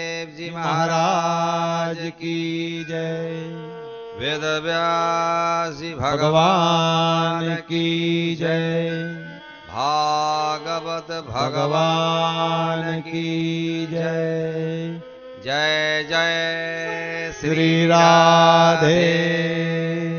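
Hindu devotional chanting: a voice sings long, drawn-out phrases with sliding pitches over a steady held drone, pausing briefly between phrases.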